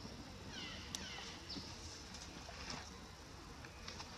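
A few short, high-pitched animal calls, each falling quickly in pitch, over a steady outdoor hiss. A single sharp click comes about a second in.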